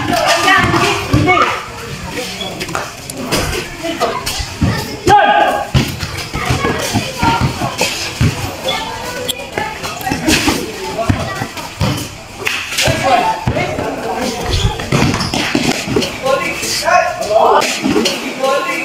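A basketball bouncing on a concrete court, with repeated thuds from play and players' voices calling out.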